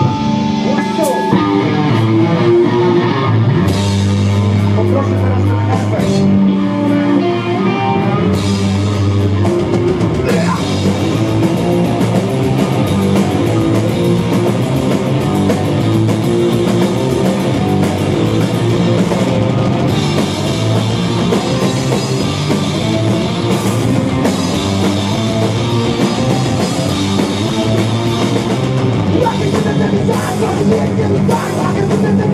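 A rock band playing live: electric guitars, bass guitar and drum kit, coming in loud at the start and keeping up a steady, dense rhythm.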